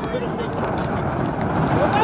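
Faint calls and shouts from players and sideline spectators over a steady outdoor noise, with a louder shout starting right at the end.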